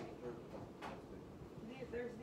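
Faint voices talking in the background, with one light click a little under a second in.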